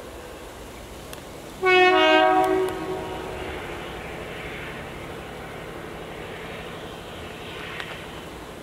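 A locomotive horn sounds one blast of about a second, two notes together, then fades away. Behind it the train runs by with a steady rumble.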